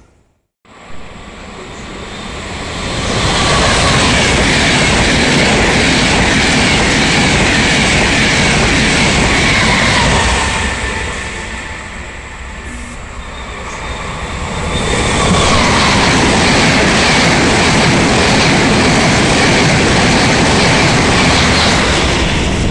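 Electric trains passing through a station at speed, a loud rushing noise of wheels on rail. It builds over the first few seconds, eases off in the middle, then swells again as a second train comes through.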